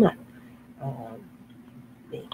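A woman's voice: the end of a word at the very start, then a short, faint, hesitant murmur about a second in, over a steady low hum.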